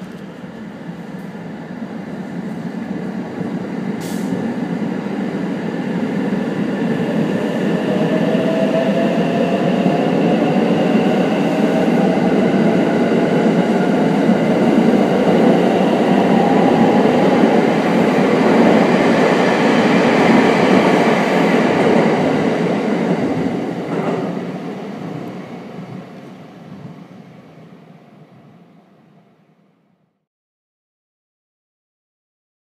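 JR West Thunderbird limited express electric train pulling away from a station platform and accelerating. Its motor whine rises steadily in pitch over the wheel and running noise, which builds and then fades as the train leaves.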